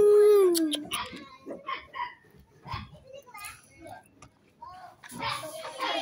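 Mostly human voices: a long, held vocal sound at the start that falls in pitch as it ends, then scattered short bits of speech, with more talking near the end.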